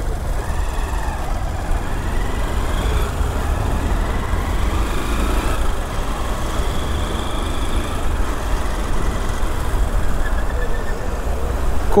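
Small single-cylinder Honda motorcycle engine running at low speed while filtering through slow city traffic, under a steady low rumble of road and wind noise, with the surrounding cars' traffic noise.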